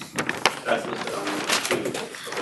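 Low, indistinct murmured speech and hums from people in a meeting room, with a sharp click about half a second in.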